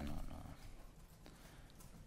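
A man's voice says a short word at the very start, then a pause of quiet room tone with a few faint clicks.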